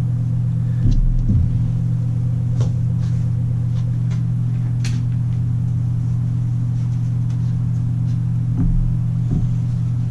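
A steady low hum runs throughout, with a few light clicks and a couple of soft thumps as laptop parts and the cooling fan are handled on the bench.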